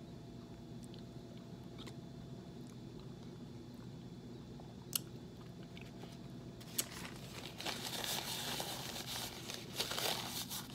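Quiet room tone with a faint steady hum, a single click about five seconds in, then about three seconds of soft crackling and rustling near the end: a person chewing a mouthful of chili and wiping his mouth with a paper napkin.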